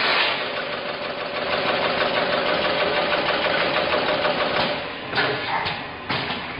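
Automatic coffee capsule bagging machine running: a steady mechanical whir with a faint hum, followed by a couple of sharp clacks near the end.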